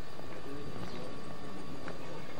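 Outdoor ambience with a few sharp, irregularly spaced clicks or knocks, the clearest near the end, over faint voices.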